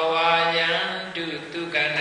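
A monk's voice chanting in long, drawn-out notes at a steady pitch, stepping to a new note a little past one second in.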